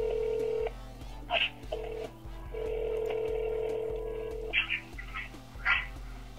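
Telephone dial tone heard down the phone line, broken off and resumed, with a few short keypad beeps as a number is dialed to transfer the call.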